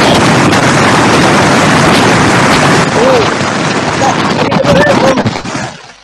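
Really loud static over a video-call participant's microphone: a dense, even hiss with a voice faintly buried in it, dropping away near the end.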